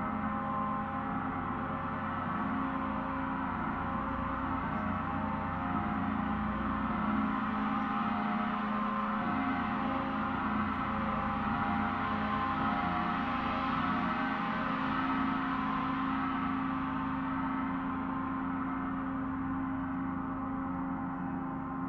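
Large Paiste gong played continuously with a soft felt mallet: a dense, sustained wash of many ringing overtones with no separate strikes standing out, growing a little louder in the middle.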